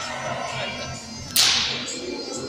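A single sharp, loud crack about 1.4 s in, ringing off over half a second in the hard-walled hall, during a silat performance. It sounds over soft accompaniment music with a low, uneven beat.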